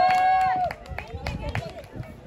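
Several high voices yelling together in one long held shout that breaks off about two-thirds of a second in, followed by a few sharp slaps and thuds of the fighters' bare feet on the foam mat and pads.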